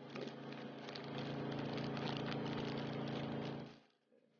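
Thin clear plastic wrap crinkling and rustling as it is handled and folded around soft dough, stopping shortly before the end. A steady low hum runs underneath.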